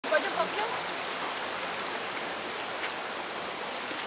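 Steady rushing of a shallow mountain stream, with a few brief voices near the start.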